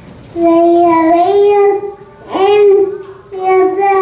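A young girl singing into a microphone in three phrases of long held notes. The first phrase steps up in pitch about a second in.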